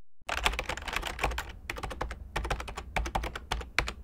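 Keys being typed on a computer keyboard: fast, irregular clicking that starts a moment in and runs on with only brief gaps, over a low hum.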